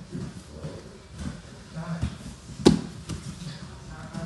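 Grapplers moving and scuffling on a foam mat, with one sharp slap about two-thirds of the way through. Indistinct voices in the background.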